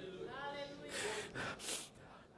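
A person's voice: a brief vocal sound, then two sharp breathy gasps.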